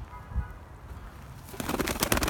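A flock of domestic tumbler pigeons feeding and jostling on a soil tray. About a second and a half in, a rapid clatter of sharp clicks and wing flapping starts as the birds scramble.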